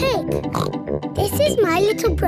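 Cartoon opening sequence: bright children's theme music under a young girl's character voice introducing herself, with oinks from a cartoon pig.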